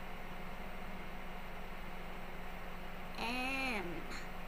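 A cat meows once, a single arching call near the end that falls in pitch as it dies away, over a steady low hum.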